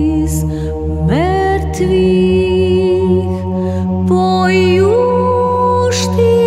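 Orthodox church chant: a low drone held steady beneath a higher voice that swoops up about a second in, holds long notes and climbs again near the end.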